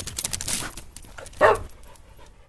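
Logo sting sound effect: a quick flurry of clicks and swishes, then a single short dog bark about one and a half seconds in.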